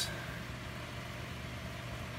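Steady low mechanical hum with a faint hiss, unchanging throughout.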